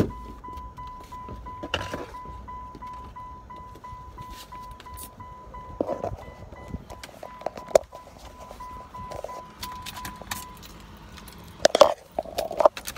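A car's warning chime beeping at a steady, even pace and stopping near the end, with a few knocks and rustles of someone settling into the driver's seat.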